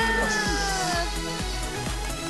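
Upbeat title jingle with a steady beat about twice a second and a pitched tone sliding downward that fades out about a second in.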